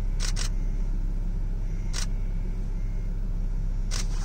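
Steady low rumble of a car idling, heard from inside the cabin, with four sharp clicks: two close together at the start, one about halfway and one near the end.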